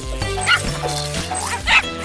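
Animated dog character's voice: two short dog calls, about half a second and just under two seconds in, over background music.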